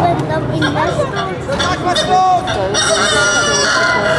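A person's voice calling out in shifting, gliding cries, ending in one long, high held cry from about three seconds in.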